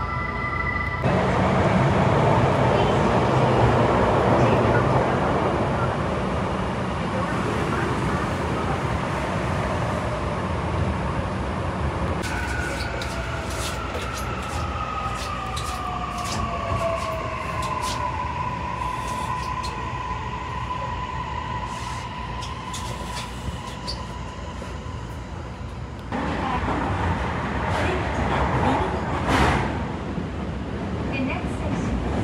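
Toei Mita Line 6500-series subway car running, heard from inside: a steady rumble of wheels and running gear. Partway through, an electric motor whine glides down in pitch and then holds steady, as the traction motors' tone does when the train slows.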